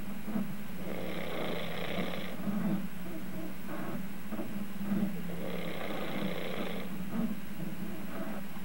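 A sleeping man snoring through his open mouth: two long snoring breaths about four seconds apart, over a steady low hum.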